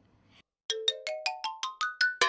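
Cartoon musical sound effect: a quick rising scale of about a dozen short struck notes, stepping steadily up in pitch, starting about two-thirds of a second in after a brief silence.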